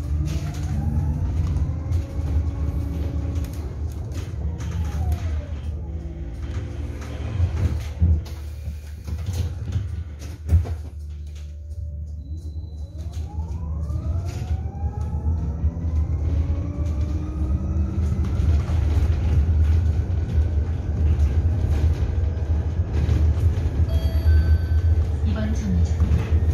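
Interior sound of a low-floor electric city bus on the move: the electric drive's whine glides up and down in pitch with speed, falling as the bus slows almost to a stop about halfway and rising again as it pulls away, over a steady low road rumble. Two sharp knocks come a little before and just after the slowdown.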